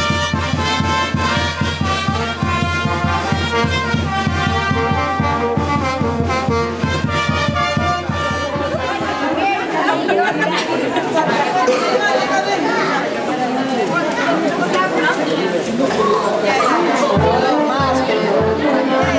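A brass band playing over a steady bass-drum beat. About nine seconds in, the drumming stops abruptly and a crowd's chatter takes over.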